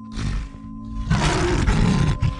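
Cinematic logo intro sound effect: a held synth drone, with a short rush of noise near the start and then a louder, longer rush of noise about a second in.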